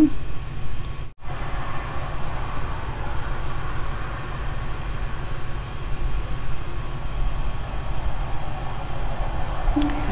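Steady low hum and whoosh of a projector's cooling fan running, with a brief dropout about a second in.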